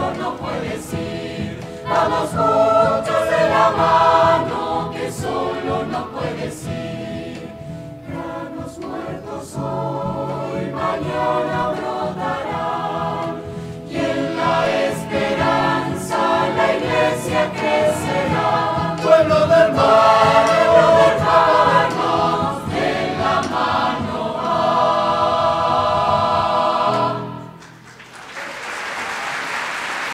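A mixed family choir of men, women and children singing a Spanish-language Christian hymn together. The singing ends about 27 seconds in, and applause starts just after.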